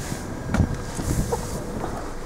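Wind noise on the microphone, a steady low rumble with a few faint clicks.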